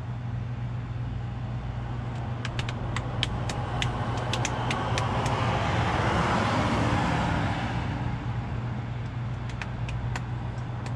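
A road vehicle passing: its noise swells through the middle and eases off over a steady low engine hum. A run of light clicks comes a few seconds in.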